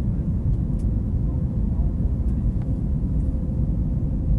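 Jet airliner cabin noise in flight: a steady, loud low rumble of engines and airflow, with a faint steady hum above it. A few faint light ticks sound in the cabin.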